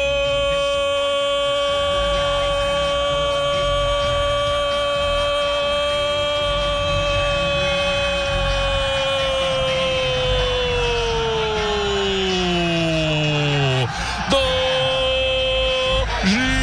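A radio football commentator's long goal cry: one shouted note held at a high, steady pitch for about fourteen seconds that slides down in pitch over its last few seconds, then a second held note starts near the end.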